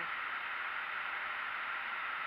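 Steady, even hiss of a Boeing 777 cockpit's background noise while its systems are powered and a hydraulic pump pressurizes the brake accumulator.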